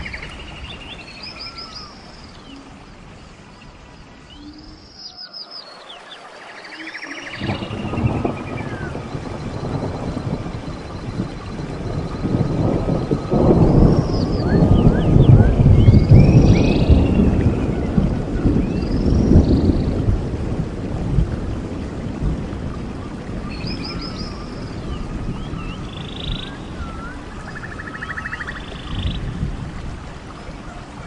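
Rainforest ambience: birds give short, repeated high calls throughout, over a deep roll of thunder that builds from about seven seconds in, is loudest in the middle and slowly fades.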